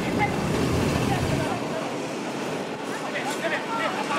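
Players calling out to each other on an outdoor football pitch, a few short shouts near the end, over a steady outdoor noise with a low rumble in the first second and a half.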